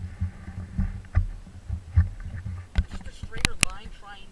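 BMW E39 M5's V8 engine running at low speed, heard as a steady low hum from inside the cabin. Several sharp knocks and clicks break in, the loudest near the end.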